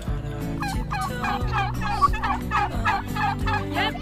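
White domestic turkeys calling: a continuous run of short, curving calls, about four a second.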